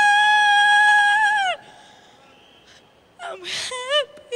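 A female singer holds a long high final note that bends down and cuts off about a second and a half in. After a short pause there is a brief breathy vocal sound, a gasp or exhale, near the end.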